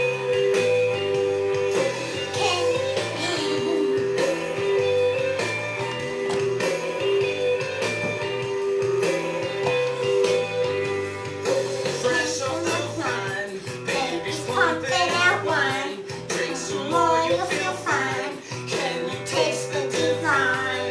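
Rock music with guitar: a repeating riff over a steady bass line, with singing coming in about halfway through.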